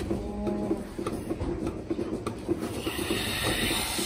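Milking machine running with an even, rhythmic mechanical pulse as its teat cups are put onto a cow's udder. Near the end, a hiss of air being drawn in through the cups.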